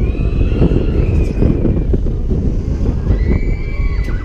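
Riders on a swinging-arm fairground thrill ride screaming over heavy wind rumble on the microphone. One long high scream holds and slowly falls over the first two seconds, and another starts near the end.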